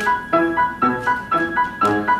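Grand piano played solo: an even run of notes, about four a second, with one high note ringing on steadily underneath them.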